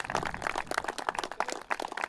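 A small group of people applauding, with many irregular hand claps.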